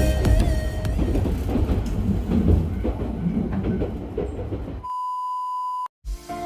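Ride noise from inside a moving vehicle: a low rumble with irregular rattles that gradually dies down. Near the end a steady high beep sounds for about a second and cuts off suddenly.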